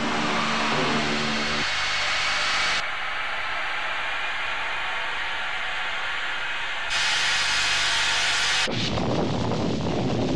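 Steady rushing noise of an aircraft in flight, changing in tone twice, with a few low music notes dying away in the first second and a half. Near the end it gives way to a rougher, deeper rumble.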